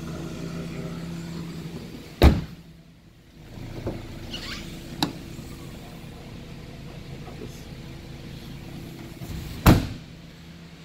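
Two heavy thuds of a car's doors being shut: a side door about two seconds in and the rear hatch near the end, with a small click in between and a steady low hum underneath.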